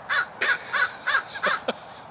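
A crow cawing over and over in a quick run, about three caws a second.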